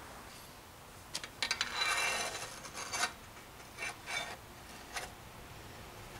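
Small steel and alloy bike parts and an Allen key handled against each other: a run of sharp metallic clicks, a longer clinking scrape about two seconds in, then a few single clinks.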